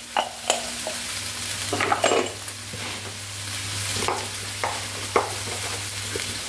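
Bean sprouts frying with a steady sizzle in a pan while they are stirred and seasoned, a spatula scraping around two seconds in and clinking sharply against the pan several times. A faint steady low hum sits underneath.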